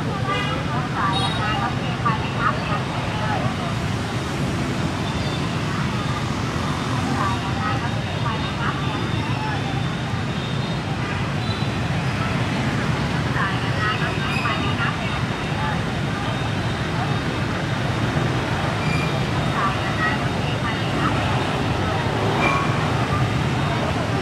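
Busy street ambience: people chatting and a steady hum of passing motorbike traffic.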